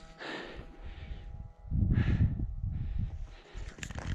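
A hiker breathing hard after climbing to a high mountain pass: a few heavy breaths, with a low rumble of wind on the microphone through the middle.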